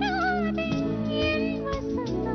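Live film-song orchestra music: a lead melody line bends and wavers in pitch near the start over steady held chords and bass.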